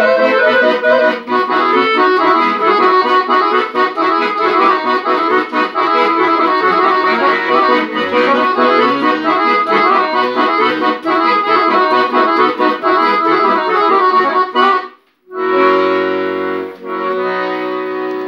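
Two chromatic button accordions playing a quick-moving tune together. About 15 seconds in they break off briefly, then end on held chords.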